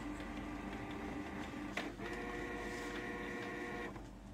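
Canon inkjet printer running a test print: its motors give a steady, many-toned whine. After a click about two seconds in, the whine changes to a higher tone.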